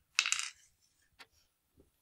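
A die is thrown onto a wooden Game of the Goose board and clatters briefly, followed by a couple of light taps as a game piece is moved across the board.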